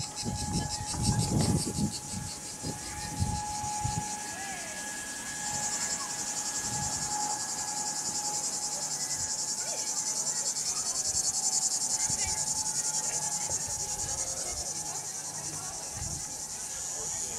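Cicadas singing in the trees: a steady, high-pitched, rapidly pulsing drone that grows louder about five seconds in.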